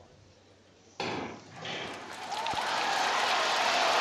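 Starting gun cracking once about a second in, out of a hushed stadium, to start a 100 m sprint. It is followed by a stadium crowd's cheering that swells steadily as the race gets under way.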